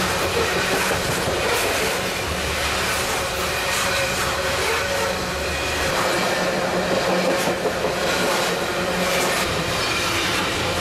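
Freight train of tank cars rolling past at close range: a continuous rumble of steel wheels on rail, with scattered clacks as wheels cross rail joints and a faint steady high wheel squeal.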